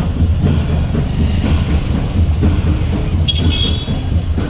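Street traffic with engines running, heard as a steady low rumble, and a short high horn toot about three and a half seconds in.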